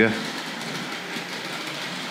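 Hornby Dublo Duchess of Montrose model locomotive, its body off, running steadily along three-rail track with its tender and coaches, giving an even mechanical running noise.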